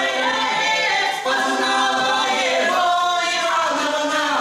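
Small Russian folk vocal ensemble, women's and a man's voices, singing unaccompanied in harmony, holding long notes that shift to new chords about every second.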